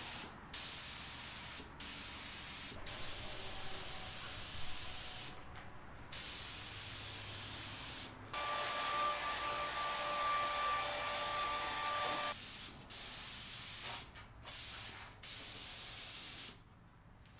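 Compressed-air gravity-feed spray gun spraying water-based leather dye in a string of hissing trigger pulls, each from under a second to about four seconds long, with short breaks between them: light tack coats going on. One longer pull in the middle carries a steady whistle in the air stream.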